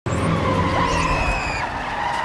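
A van braking hard to a stop with a high, steady squeal over a rushing noise. The squeal cuts off about three-quarters of the way through.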